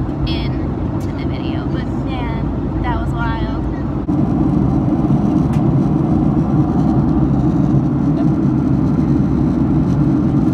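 Steady low drone of a jet airliner cabin in flight, with faint voices in the first few seconds. The drone steps up louder about four seconds in.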